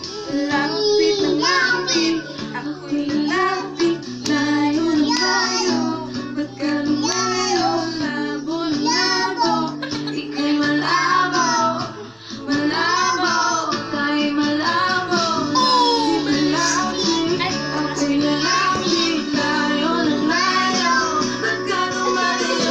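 A toddler singing into a microphone over loud backing music, her pitched vocal line gliding over steady bass notes, with a short dip about twelve seconds in.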